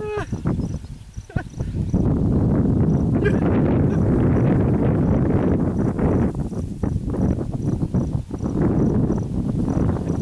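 Steady low rushing noise like wind buffeting the microphone, with a faint high-pitched pulse repeating about three times a second.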